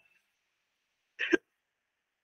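A man's single short laugh, close to the microphone, about a second in; otherwise silence.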